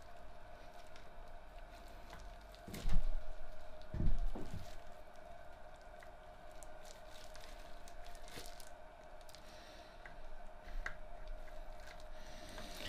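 Hand work on the bearing caps of a stripped Reliant 750cc engine block: greasy metal parts handled and knocked, with two louder knocks about three and four seconds in and a few light clinks later, over a steady faint hum.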